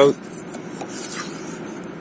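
Hands rubbing and sliding over a cardboard product box as it is turned over.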